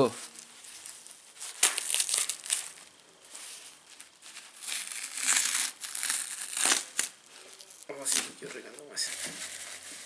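Crinkling of a disposable diaper's plastic backing and the tearing of its cotton padding as hands pull the filling out, in irregular bursts of rustling.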